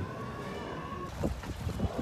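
A faint steady high tone for about a second, then wind buffeting the microphone in a few low rumbling gusts.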